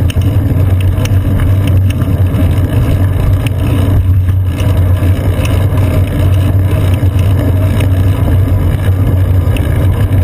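Steady, loud low rumble of city street traffic and road vibration picked up by a bicycle's seat-post-mounted GoPro Hero 2 while riding among trucks, vans and buses, with faint scattered ticks of small rattles.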